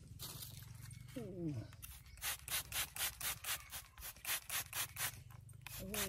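Hand-pump spray bottle squirted again and again at a rough amethyst crystal to wash soil off it: a quick run of short hissing bursts, about four a second, starting about two seconds in.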